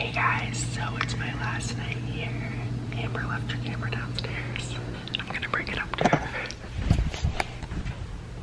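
A man whispering close to the microphone over a steady low hum, with a few short knocks near the end.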